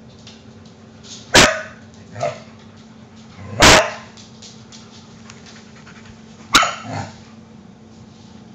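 A dog barking: three loud barks a couple of seconds apart, the middle one the loudest and longest, with a softer bark following the first and the last.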